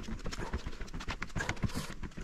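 Footsteps on dry forest ground: a fast, irregular run of crackling steps.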